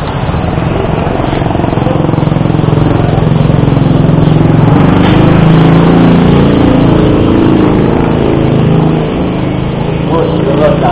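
An engine runs steadily, growing louder to a peak about halfway through and easing off again near the end, like a motor vehicle passing by.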